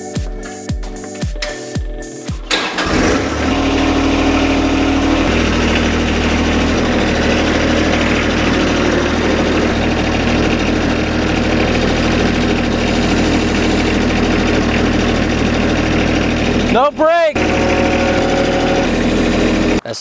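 Background music with a beat, then about two and a half seconds in a John Deere subcompact tractor's diesel engine starts and runs steadily as the tractor is driven. There is a brief swooping sound near the end.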